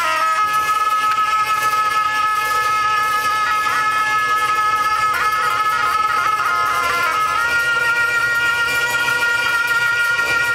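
Tibetan monastic ritual music: gyaling double-reed oboes playing a held, ornamented melody that steps to a new note about seven seconds in.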